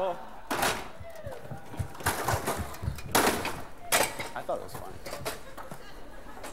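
Stepladders set down on a wooden stage and climbed: a scattered series of sharp knocks and clatters, with faint voices in between.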